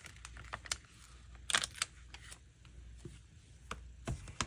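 A paper sticker being peeled off its backing sheet and handled: a few short crinkly rustles and small clicks, the loudest about a second and a half in.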